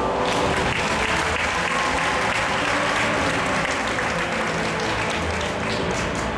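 Audience applause breaks out just after the start and carries on over the skaters' program music.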